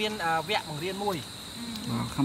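Steady high-pitched trill of night insects, with people's voices talking over it in the first second and again near the end.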